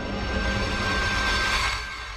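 Logo-reveal intro sting: a sustained musical drone with low rumble and a rising rush of noise. It swells to a peak near the end and then begins to fade.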